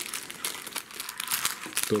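A small thin plastic packet crinkling as it is handled in the fingers: a rapid run of irregular crackles.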